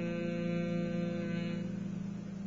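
A man's steady Bhramari (bee breath) hum: one long held low note through closed lips on the out-breath. Its brighter overtones fade out near the end as the note thins.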